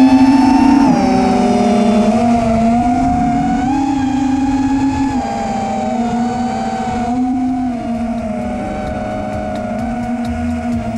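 Small FPV racing quadcopter's brushless motors (T-Motor F40 Pro 2400KV) whining in flight, picked up by the onboard action camera. Several close tones step up and down in pitch with the throttle and cross and beat against each other.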